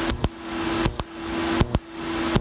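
TIG welding arc on thin bicycle tubing, laying a tack with filler rod: a steady hiss that swells and fades, over a steady hum, with several sharp clicks.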